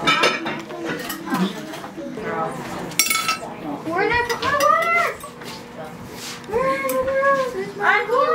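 Serving spoons and dishes clinking as food is dished up, with one sharp ringing clink about three seconds in. A child's high voice rises and falls without clear words in the second half.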